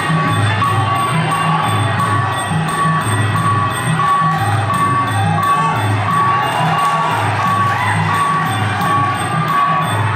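Traditional Kun Khmer fight music played live at ringside: drums beating a steady pulse about twice a second under a wavering wind-instrument melody, with crowd cheering over it.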